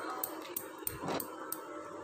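Faint stirring of a thick milk and milk-powder mixture with a silicone spatula in a steel kadhai: soft scrapes against the pan and a few light ticks.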